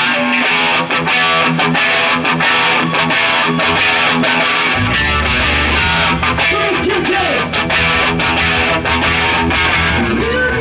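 Double-neck electric guitar played live, a fast run of picked notes and chords. About halfway through, a deep bass comes in underneath.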